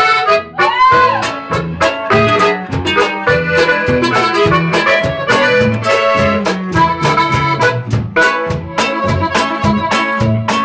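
Norteño band playing live, with a diatonic button accordion carrying the melody over acoustic guitar, electric bass and drums keeping a steady beat; instrumental, no singing.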